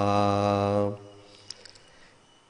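A male Buddhist monk's chanting voice holding the last syllable of a Sinhala meditation line on one steady pitch for about a second, then stopping for a short pause.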